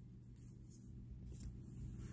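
Faint handling of trading cards: a few soft slides of card against card over a low, steady room hum.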